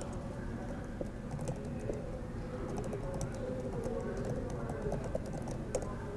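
Computer keyboard being typed on: irregular runs of key clicks as numbers and an e-mail address are entered, over a low steady room hum.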